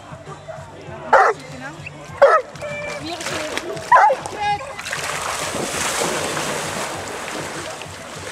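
Newfoundland dog barking loudly three times while held back by its harness, then a long stretch of splashing water as it bounds into the lake and swims off.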